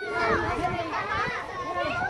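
Many children's voices talking and calling out over one another at play.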